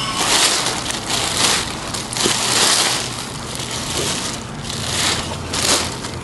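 Large clear plastic bag crinkling and rustling as it is handled and pulled off, in several loud surges.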